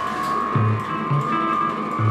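Live improvised experimental rock from an electric guitar, electric bass and drum kit: a steady, high, held guitar tone runs through, over short low bass notes and light drum hits.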